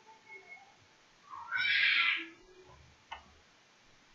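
A single animal cry about a second long, starting low and rising in pitch, in the background of a room. A short sharp click follows about three seconds in.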